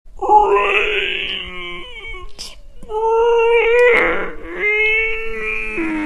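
A voice making three long, wavering zombie-style moans, one after another, with a short hiss between the first two.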